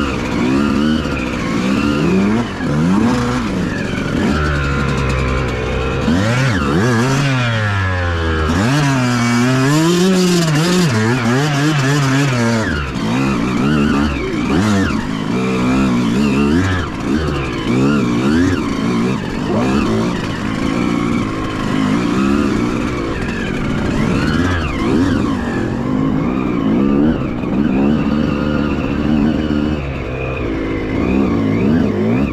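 Two-stroke enduro dirt bike engine being ridden over rough ground, its revs rising and falling every second or so as the throttle is blipped, with a few longer, smoother swells of revs in the middle.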